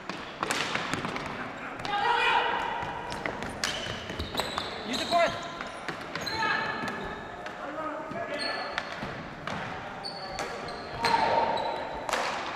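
Ball hockey play on a gymnasium's hardwood floor: sharp knocks of sticks and the ball striking the floor and boards, echoing in the hall, with players shouting to one another.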